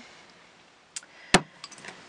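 Craft supplies handled on a tabletop: a faint click about a second in, then one sharp tap, then a few light ticks.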